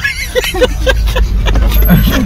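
Steady low rumble of a car driving in traffic, heard from inside the cabin, with short snatches of a person's voice over it.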